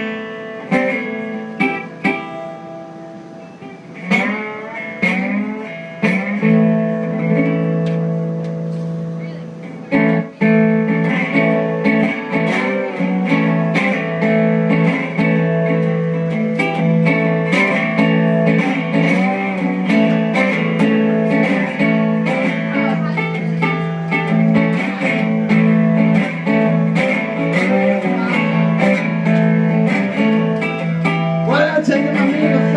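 Solo blues guitar intro: plucked notes over a steady bass line, with a few sliding notes. It starts soft and uneven, then settles into a full, steady rhythm about ten seconds in.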